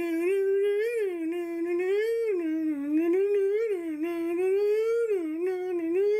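One voice humming a wandering tune in an unbroken line, the pitch gliding up and down.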